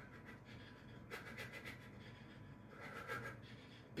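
Faint, quick breathy exhalations from a man throwing rapid shadow-boxing punches, coming in two short clusters, one about a second in and one near three seconds.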